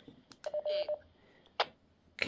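Retevis RA-89 handheld radio's keypad beep as a menu key is pressed: one short steady tone about half a second in, with a few small clicks around it.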